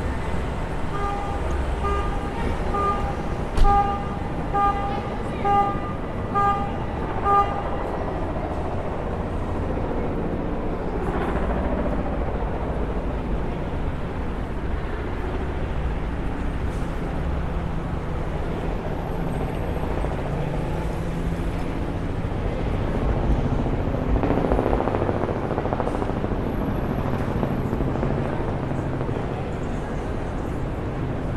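Crosswalk pedestrian signal beeping a pitched tone about twice a second for several seconds during the walk phase, over steady city street traffic. Cars pass by later on.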